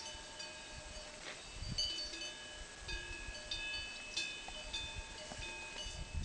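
Several bells ringing irregularly at different pitches, each strike ringing on and overlapping the next, with an occasional low rumble.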